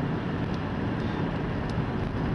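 Steady engine and tyre noise inside a car's cabin while it drives along a rural two-lane road.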